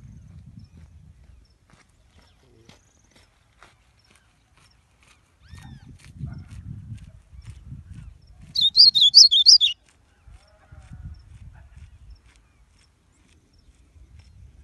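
A caged small finch sings one brief burst of rapid, high-pitched notes lasting about a second, a little past the middle, after a few faint scattered chirps. A low rumbling noise comes and goes around it.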